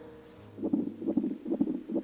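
Handheld fetal Doppler monitor picking up an unborn baby's heartbeat: quick, rhythmic pulsing whooshes, several a second, starting about half a second in.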